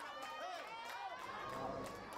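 Several high-pitched voices of children and spectators calling and shouting over one another, with a few sharp knocks mixed in.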